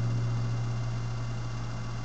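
The final strummed chord of an acoustic guitar ringing out and slowly fading, its low notes lasting longest, over a steady hiss from a webcam microphone.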